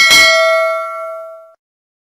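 Notification-bell 'ding' sound effect from a subscribe-button animation: struck once, ringing with several clear tones that fade away over about a second and a half.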